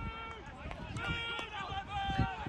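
Voices shouting out on a rugby league pitch during play: several held calls of a few tenths of a second each, with a few short knocks between them.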